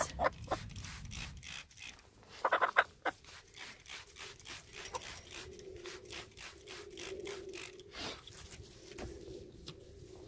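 Repeated squirts of a hand trigger spray bottle spraying poultry mite spray onto a hen's legs: short sharp hisses, two to four a second, with a louder burst about two and a half seconds in.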